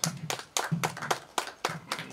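A few people clapping briefly, in quick sharp claps that thin out and stop near the end.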